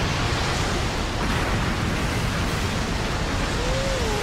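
Loud, steady rush of surging water starting suddenly, an animated sound effect for huge crashing waves. Near the end a man's wavering cry begins.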